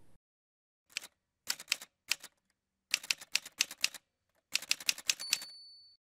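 Typewriter sound effect: several bursts of rapid key clacks with short pauses between them, then a single ringing bell tone near the end that fades away.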